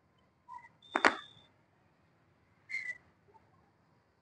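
A single sharp knock of a cricket ball meeting the bat about a second in, with a brief ringing tone, and two faint taps around it.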